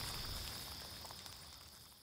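Faint night ambience with a steady high insect drone, fading out over the two seconds.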